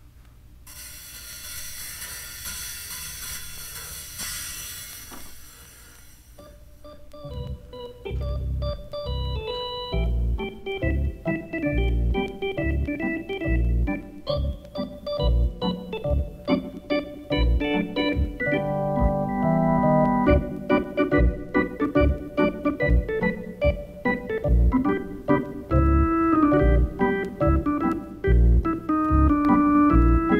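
A few seconds of bright, rising hiss, then an organ instrumental from a vinyl LP of lounge organ music: chords and melody over a regular bass line, getting louder through the rest.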